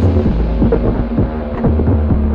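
Experimental electronic music: a deep, steady throbbing bass drone whose low notes shift in pitch, under a dense scatter of short clicks and hits.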